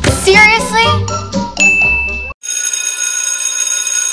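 An electric bell ringing, a cluster of steady high tones with a fast rattling flutter, starting abruptly about two and a half seconds in after a high voice over music.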